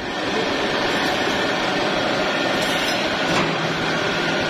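Poultry processing line running: the overhead shackle conveyor and its machinery make a steady mechanical din, with metal shackles clinking.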